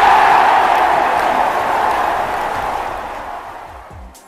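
A large crowd cheering, loudest at the start and slowly dying away.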